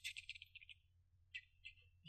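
Near silence: room tone with a few faint, brief high-pitched sounds, mostly in the first half-second.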